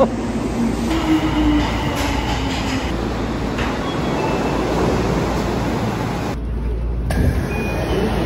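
Tokyo Metro Marunouchi Line subway train in an underground station, giving a steady low rumble with faint machine tones over it.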